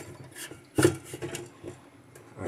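A printed circuit board sliding along plastic card guides into a metal card cage, its edges scraping, with a sharp knock a little under a second in and lighter knocks either side.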